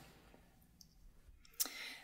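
Quiet pause in talk with a few faint clicks, then a sharp mouth click about one and a half seconds in, followed by a short soft breath-like sound from the speaker.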